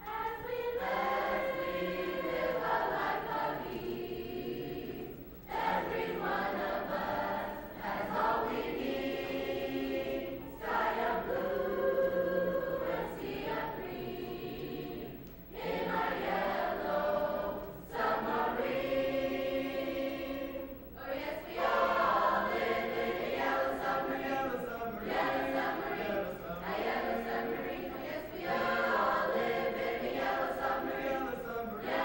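A high school mixed choir singing, in phrases of a few seconds with short breaks between them.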